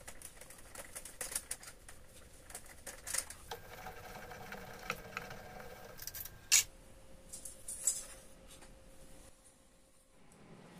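Irregular light clicks and taps of small parts being handled: a thin aluminum fin and a 3D-printed plastic fixture on a mini milling machine's table. A faint steady hum of a few tones runs through the middle, and one sharper click comes about six and a half seconds in.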